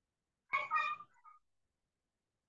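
One short, high-pitched animal call, about half a second long, with a faint trailing note after it.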